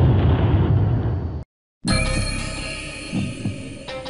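A loud low rumble fades and cuts off abruptly about a second and a half in. After a brief silence, film-score music comes in, with steady held tones over a regular low pulse about twice a second.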